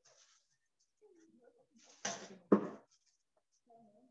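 Mostly quiet, with one short voice sound of under a second about halfway through: a brief word or vocal noise.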